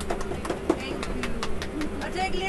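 Scattered hand claps from a group of people, thinning out to about two or three a second, over a steady low hum and faint voices.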